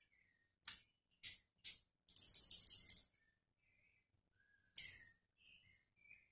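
Perfume atomizer on a Stanhome perfume bottle spritzing onto the skin in short hissing sprays: three single puffs, then a quick run of about five sprays, then one more near the end.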